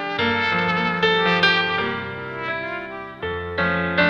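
Solo trumpet playing a slow bolero melody in long held notes over a backing accompaniment with a bass line.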